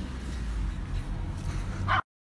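Steady low rumble of outdoor background noise on a phone microphone, with a brief higher-pitched sound just before the end.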